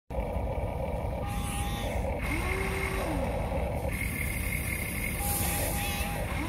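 Huina remote-control excavator's small electric motors whining as the boom and bucket move: the pitch rises, holds and falls again in runs of about a second, over a steady low noise.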